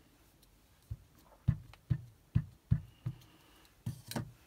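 A Memento ink pad dabbed repeatedly onto a rubber stamp mounted on a clear acrylic block to ink it up. It makes about seven soft, irregularly spaced taps.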